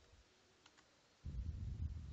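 Faint computer keyboard clicks as keys are pressed to switch windows. From a little past halfway there is a low, muffled rumbling noise.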